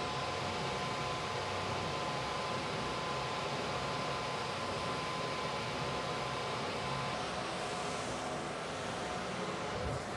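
Electric overhead hoist running steadily as it lowers a suspended race car, a hum with a couple of steady whining tones.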